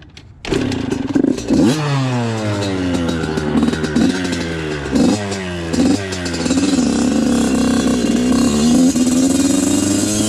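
Yamaha YZ85 two-stroke single-cylinder dirt bike engine catching suddenly about half a second in, then blipped several times with the revs falling away after each, before settling into steadier running as the bike pulls off.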